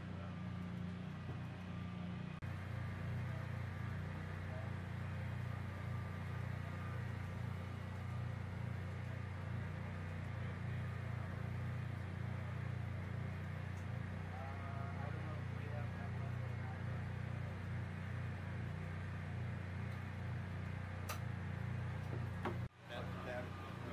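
Steady low mechanical hum of running machinery in a small equipment room, with a deep drone that shifts slightly at a cut a couple of seconds in.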